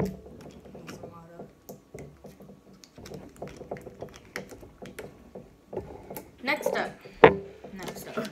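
Bottles being handled and set down on a table: a loud knock at the start, then scattered light taps and clicks, with a sharp click about seven seconds in.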